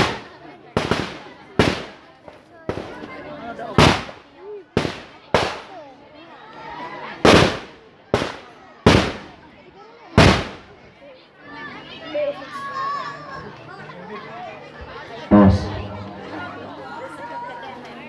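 Firecrackers going off: about a dozen sharp bangs at uneven intervals over the first ten seconds, then one more later, with faint voices of a crowd between them.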